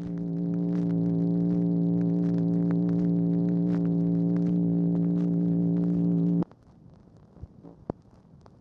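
A steady, low, buzzing telephone line tone after the hang-up, with light crackles from the Dictabelt recording over it; the tone cuts off suddenly about six and a half seconds in, leaving faint crackle.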